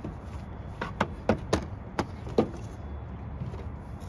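Heavy-gauge jumper cables being untied and uncoiled by hand: a quick run of about six sharp clicks and knocks in the first two and a half seconds, then quieter handling.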